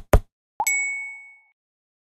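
Logo sting sound effect: two quick sharp hits, then a short upward sweep into a bright bell-like ding that rings out for under a second.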